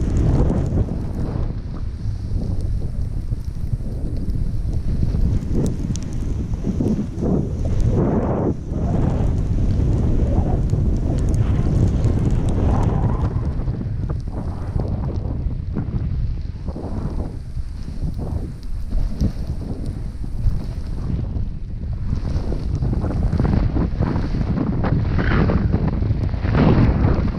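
Wind buffeting an action camera's microphone while riding downhill on a ski slope, a steady low rumble. Edges scraping over packed snow come and go through it in uneven swells.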